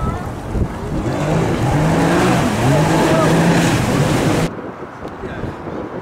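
Wind and water noise on a yacht's open deck, with a voice underneath. It cuts off suddenly about four and a half seconds in to a quieter sound.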